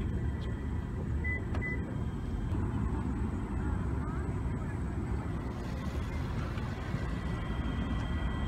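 Steady low outdoor rumble of background noise, with two short high beeps close together about a second and a half in.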